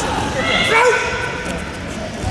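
Voices in a crowded gymnasium at a karate sparring bout, with one loud shout that bends in pitch about half a second in, over steady background chatter.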